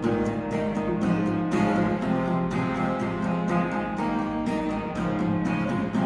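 Acoustic guitar strummed in a steady rhythm, about two strums a second, ringing chords with no voice over them.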